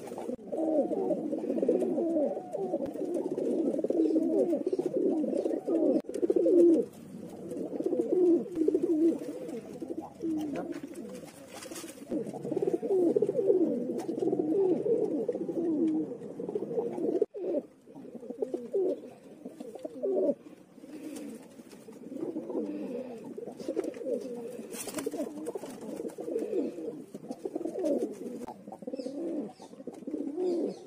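Several domestic pigeons cooing, their low, throaty coos overlapping almost without pause, with a brief break about halfway through.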